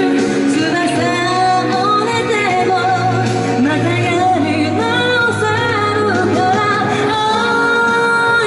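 A woman singing a pop song live into a handheld microphone over backing music, holding long notes near the end.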